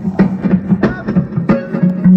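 Live band music: guitar notes picked in a steady rhythm over a held low note.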